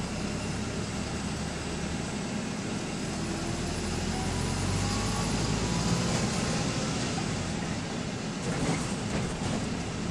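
Cabin noise of a Volvo B5LH hybrid double-decker bus on the move, heard from the upper deck: a steady low drone of drivetrain and road noise that swells around the middle, with a faint rising whine as it picks up speed and a few rattles near the end.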